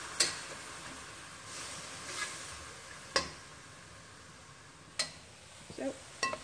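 Spinach and garlic sizzling in a hot wok. A metal spatula knocks against the wok three times as it is stirred.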